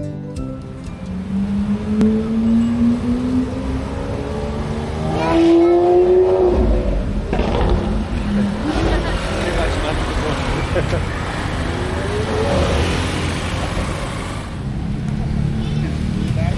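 Street traffic with a motor vehicle engine speeding up, its pitch rising steadily over the first few seconds. Traffic noise swells loudest around six seconds in, and another engine rises briefly near the three-quarter mark.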